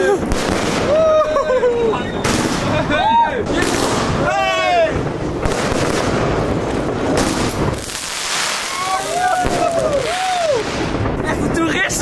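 Fireworks going off overhead: a steady run of bangs and crackling, with people's short exclamations over them.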